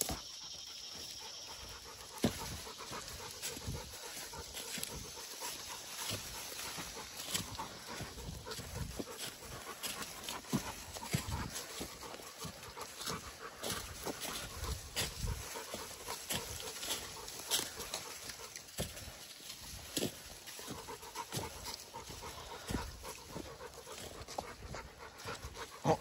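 A dog panting steadily as it walks in the heat, with footsteps crunching on dry leaf litter in short, irregular crackles.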